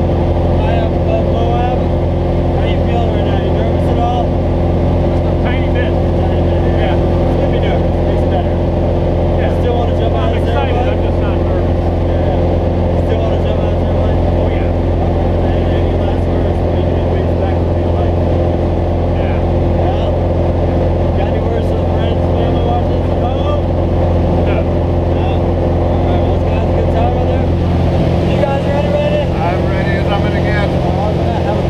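Steady drone of a small propeller plane's engine heard from inside its cabin in flight, at a constant pitch and level, with voices faint beneath it.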